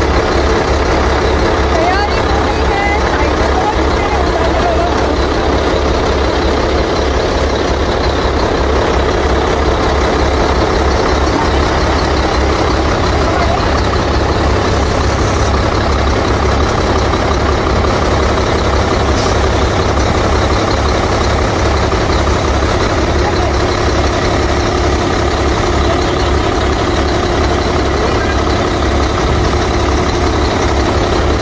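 Heavy tipper truck's diesel engine idling steadily, with a deep, even running sound.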